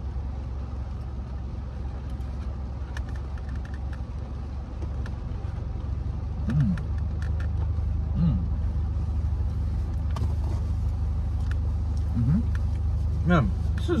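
Steady low hum of a car idling, heard inside the cabin, with faint crunching clicks and a few short hummed "mm" sounds from people chewing a cookie.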